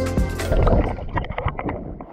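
Background music that stops about half a second in, followed by water splashing and sloshing at the sea surface: a run of short, irregular splashes that die away.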